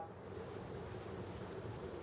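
Faint, steady background hiss of a quiet room, with no distinct sound event.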